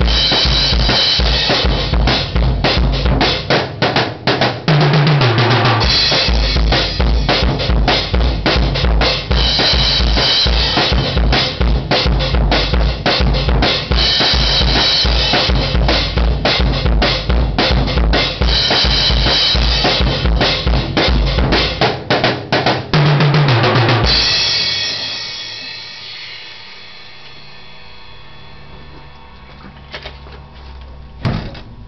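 Drum kit solo played fast: rapid, steady bass drum strokes under snare hits and recurring cymbal crashes. A falling-pitch fill runs down the toms twice, about five seconds in and again near the end. The playing stops on a cymbal crash that rings and slowly fades.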